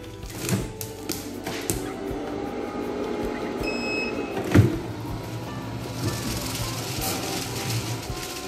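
Background music over an automatic shoe-cover machine covering a shoe in plastic film. There are a few clicks, then a short beep about four seconds in, then a loud thunk. A hiss follows near the end.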